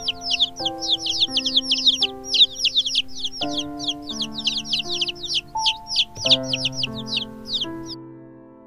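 Baby chicks peeping: a dense run of short, high cheeps, several a second, each falling in pitch, over keyboard music.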